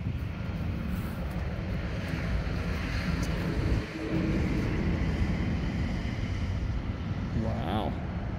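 A bin-hauling truck driving past on the road, a steady rumble that dips briefly just before the middle.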